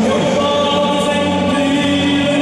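Gospel worship music: a group of voices singing with long held notes.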